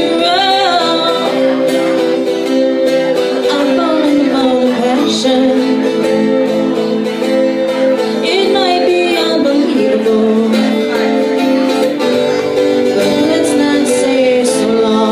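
A woman singing a folk-rock song to an acoustic guitar, with a wavering vibrato on held notes near the start and about eight seconds in.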